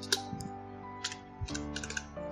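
Computer keyboard keystrokes: a couple of sharp clicks near the start, then a quick run of keystrokes near the end as a word is typed. Soft background music plays under them.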